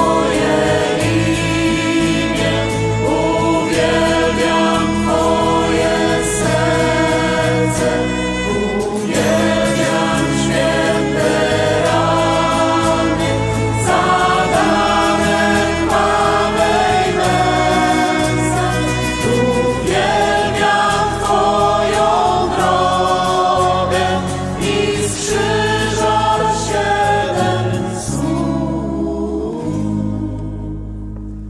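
Christian worship song: voices singing together over instrumental backing, fading down near the end.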